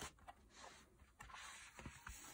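Faint rustle of a picture book's paper page being turned over by hand.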